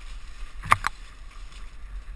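Mountain bike riding down rough, rocky singletrack, picked up by a body-mounted camera: a steady rumble and rattle from the bike over the ground, with two sharp knocks close together about two-thirds of a second in.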